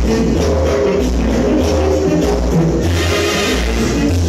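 Dance music played loud over a sonidero sound system. It has a heavy bass line that changes note about every half second.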